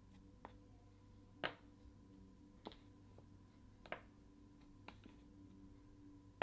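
Chess pieces being set down on a Chessnut Air digital chess board: about six faint, sharp taps spread roughly a second apart over near silence, the loudest about a second and a half in.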